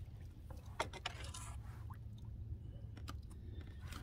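Handling noise of a kayak and its paddle: a few light knocks and clicks, the sharpest about a second in, over a steady low rumble.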